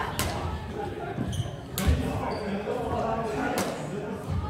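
Badminton rackets hitting a shuttlecock in a rally: three sharp strikes about a second and a half to two seconds apart, with a few short high squeaks between them.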